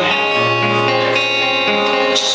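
Acoustic guitar playing sustained chords as live accompaniment, with no vocal line in this stretch.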